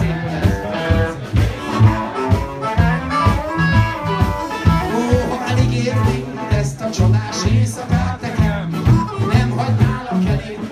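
A live blues band playing: electric guitar, electric bass and drums keeping a steady beat, with a harmonica played into a hand-held microphone.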